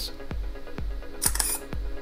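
Simulated DSLR shutter sound from the CameraSim web app: one short, sharp click-whir a little past halfway through, heard over background music with a steady low beat.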